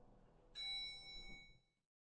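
A single bright elevator chime rings once about half a second in and fades away over about a second. Under it runs a faint low rumble, as of the lift arriving at the tower's observation deck.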